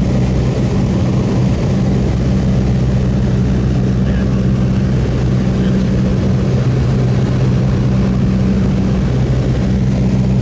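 Steady drone of a propeller airplane's engines heard from inside the aircraft in flight: a constant low hum with a couple of steady tones and rushing air, unchanging throughout.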